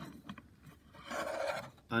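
A short rubbing, scraping sound about a second in, under a second long, from hands handling the plastic housing of a BioLite PowerLight lantern. A couple of faint clicks come before it.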